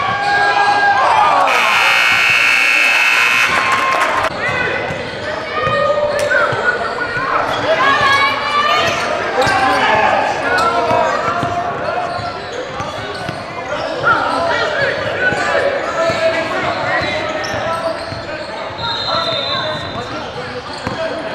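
Indoor youth basketball game: a basketball is dribbled on a hardwood court while spectators and players call out, echoing in a large gym. About a second and a half in, a harsh buzzer sounds for about two seconds.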